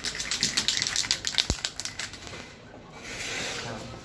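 Aerosol spray paint can being shaken: the mixing ball rattles in quick clicks for about two seconds, then a short steady hiss of spray near the end.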